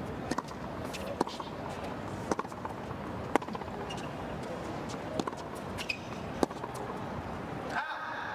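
Tennis rally on a hard court: a series of sharp racket strikes and ball bounces about once a second, over a steady background hum.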